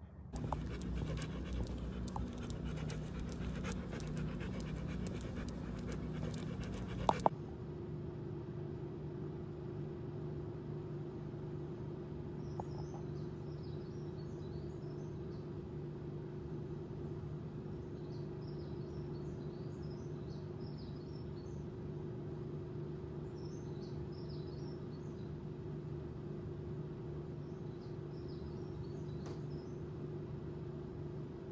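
Wind rushing over the microphone, mixed with a Great Pyrenees panting, cuts off suddenly about seven seconds in. A steady low hum follows for the rest, with faint high chirps now and then.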